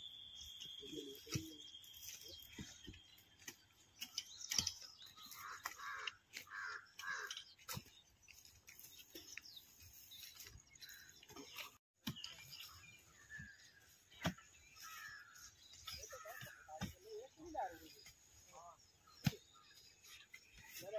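Long-handled digging tools striking and levering dry soil in scattered, irregular knocks as shatavari roots are dug out by hand, with birds calling in the background.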